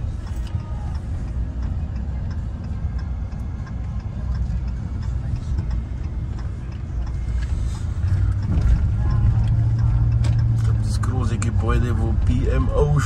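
Steady low rumble of a vehicle's engine and tyres heard from inside the cabin while driving, with a low hum that grows louder about two-thirds of the way through.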